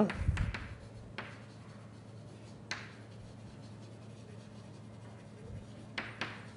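Writing on a lecture board: a few short, sharp scrapes and taps, with long quiet stretches between them, over a steady low hum.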